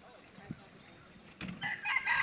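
A rooster crowing, starting about a second and a half in as a sustained, pitched call over faint background noise.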